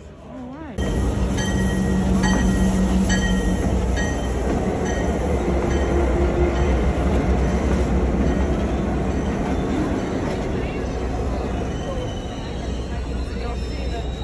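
Diesel locomotive running past at close range, a loud, steady low rumble with the noise of the wheels on the rails. A short ringing repeats about twice a second in the first few seconds.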